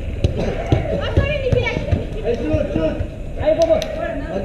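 Five-a-side football in play: scattered sharp knocks of the ball being kicked and running footsteps, with players' shouts and calls over a steady background hum.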